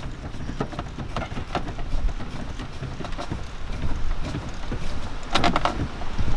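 Holden Cruze gear knob being screwed by hand onto the threaded manual gear lever: a run of small irregular clicks and rustles, with a slightly busier cluster about five seconds in, over a low rumble.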